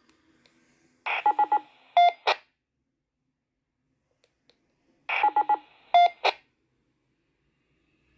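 Baofeng dual-band handheld radio giving two identical bursts about four seconds apart, each a rush of static with three quick beeps, then a longer lower beep and a short static tail, as its push-to-talk key is keyed.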